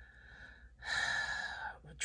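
A person's audible intake of breath, about a second long, coming just before halfway, after a fainter breath.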